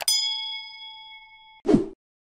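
Subscribe-button animation sound effect: a mouse click followed at once by a single bell ding that rings out and fades over about a second and a half, then a short whoosh near the end.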